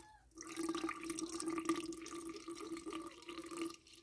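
A thin stream of water trickling from a plastic bottle into a glass jar of flour, a slow, steady pour as water is weighed out for a sourdough starter.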